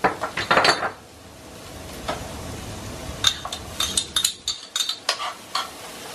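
Chopped peppers frying in butter in a frying pan: a loud burst of noise as they go in, then a steady sizzle while a spoon clicks and scrapes against the pan as they are stirred.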